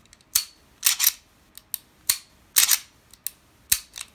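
Archon Type B 9mm pistol being function-checked by hand: its slide and trigger give about nine sharp metallic clicks and snaps, spaced irregularly. The gun passes the check: it works as it should after reassembly.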